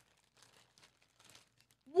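Faint, scattered crinkling of a foil blind-bag wrapper as a toy is pulled out of it.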